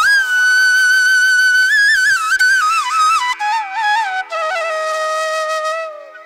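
Bamboo flute playing a slow, ornamented Carnatic-style melody over a steady drone: a long high note with small bends, then the line steps down and settles on a long low note that fades near the end.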